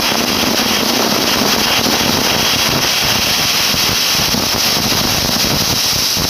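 Prestige Deluxe pressure handi giving its first whistle: a loud, steady hiss of steam jetting out past the weight valve on the lid, the sign that the cooker has come up to full pressure.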